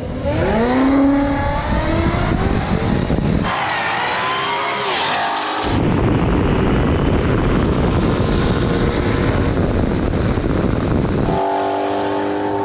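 Drag cars launching and accelerating hard. For the first few seconds the engine notes climb in pitch and break off at the gear changes. After that comes a steady rush of wind and road noise on a car-mounted camera.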